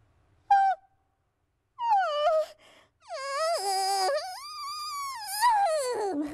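A high, cartoonish puppet-character voice making wordless sounds: a short yelp about half a second in, a falling whine, then a long wavering moan that rises and falls in pitch.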